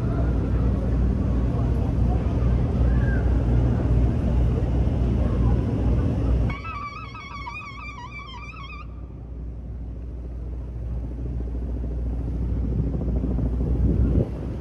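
Steady low rumble of city traffic on an outdoor street. Around the middle, a high wavering tone sounds for about two seconds.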